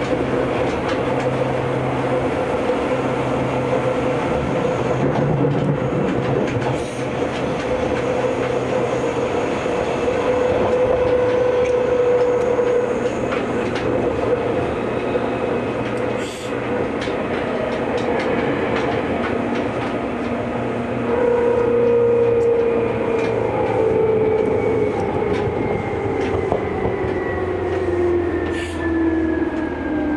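Seibu 2000 series electric train heard from inside the car: steady running noise and motor whine with a few clacks from the rails. In the last third the whine slides down in pitch as the train slows toward a station.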